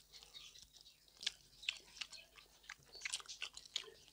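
Close-miked chewing of pork belly and rice: irregular wet mouth clicks and smacks, sparse at first and busiest about three seconds in.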